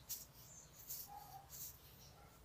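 Faint handling noise as a plastic squeeze bottle of liquid silicone glue is pressed against organza ribbon: a few short, soft rustles and clicks.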